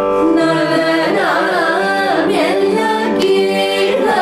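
Carnatic vocal singing: a melodic line with sweeping, ornamented pitch glides over a steady drone.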